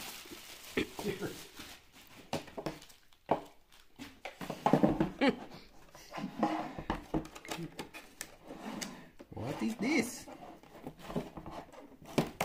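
A single cough, then handling noise from a small plastic fan heater and its packaging being turned over on a table: scattered light clicks, knocks and rustles, with some low muttering in between.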